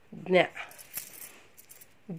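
A short spoken syllable, then faint light rattling and scratching as a hand writes with a pencil in a paper workbook.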